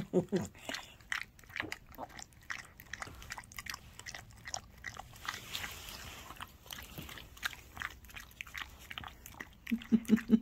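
Rottweiler/Shepherd mix dog licking peanut butter out of a small plastic cup: quick, irregular wet licks and smacks of the tongue and mouth, several a second, with a softer hissy stretch about midway.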